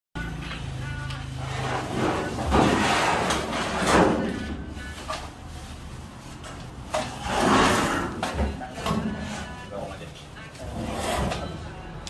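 Indistinct voices of workers, with several loud, noisy bursts of handling sound from the bundles being moved.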